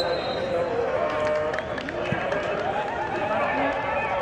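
Mostly speech: voices talking over the chatter of a football stadium crowd, with a couple of short knocks about two seconds in.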